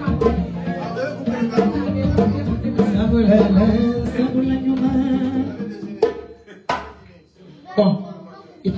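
A woman sings into a handheld microphone over sumu dance music with drums and percussion. About six seconds in the music dies away, and two sharp knocks follow.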